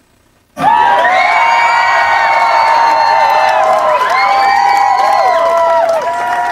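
After about half a second of near silence, a loud radio-station break bumper cuts in abruptly: several long held pitched tones or voices layered together, a few of them sliding down in pitch.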